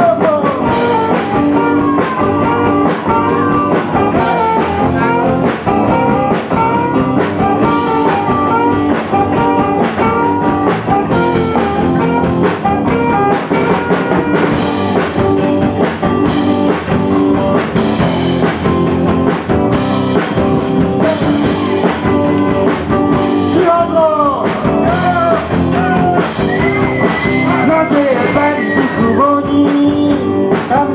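Live rock band playing an instrumental passage between verses: electric guitar and drum kit with a saxophone carrying melodic lines that bend and slide, ending in a long held high note near the end.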